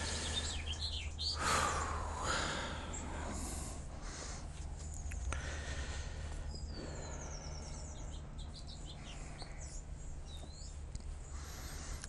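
Birds chirping in the background, short high falling whistles at scattered moments, over a steady low hum.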